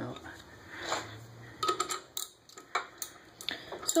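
Irregular metallic clicks and clinks of a wrench turning a starter bolt against the back of a Ford Model A flywheel, forcing the tight flywheel off the crankshaft.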